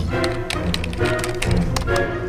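Computer keyboard typing: a quick, irregular run of key clicks, over background music.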